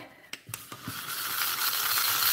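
A few clicks, then a small handheld vacuum cleaner switched on about a second in, its motor hiss building steadily as it sucks up spilled embossing powder from the table.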